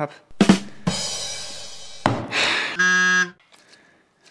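Comedic sound-effect sting: a drum hit and a fading cymbal crash, then a short buzzer-like horn tone.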